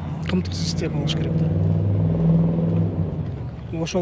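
A motor vehicle's engine running close by: a steady low hum that grows louder until about two seconds in, then fades out about a second later, as it passes.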